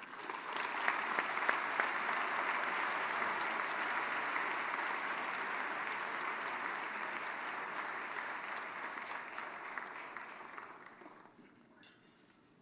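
Large audience applauding steadily, the clapping fading away about eleven seconds in.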